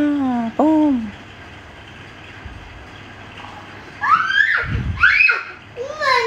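A baby monkey's short high calls: two arched calls in the first second, then two sharply rising squeals about four and five seconds in, over a steady low hiss.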